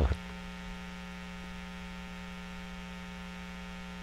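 Steady electrical hum with a stack of evenly spaced overtones, unchanging in level.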